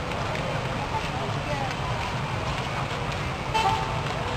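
Outdoor city ambience: a steady low rumble of traffic with faint voices in the background, and a short horn toot near the end.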